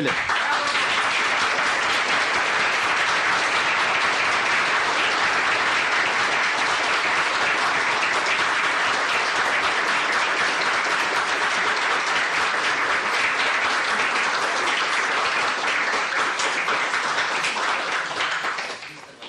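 Audience applauding, a steady, dense clapping that holds at the same level throughout.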